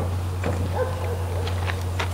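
A dog whining briefly and faintly, one wavering note lasting under a second, over a steady low hum, with a few light clicks.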